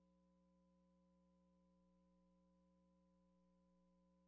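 Near silence, with only a faint steady hum.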